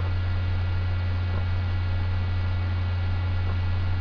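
Steady low electrical hum with fainter higher tones and a light hiss over it.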